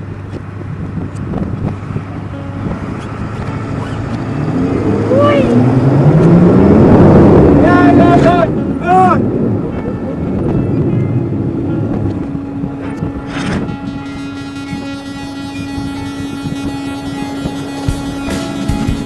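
A tow vehicle's engine revving up as it pulls a boat trailer through soft sand, rising to its loudest about seven seconds in and then settling. People shout briefly around the loudest stretch, and music fades in near the end.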